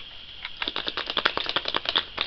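Small hard plastic toys clicking and rattling in quick, irregular taps.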